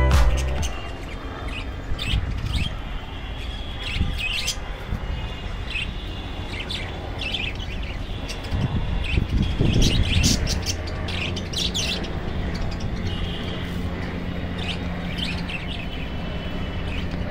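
Albino creamino budgerigar chirping in short, scattered calls, over a low background rumble. A steady low hum comes in halfway through.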